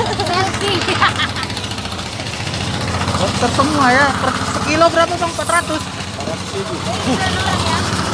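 Indistinct voices talking over the steady low hum of an engine running.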